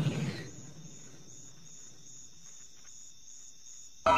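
A cricket chirping faintly and evenly, about two or three chirps a second, over quiet night-time ambience.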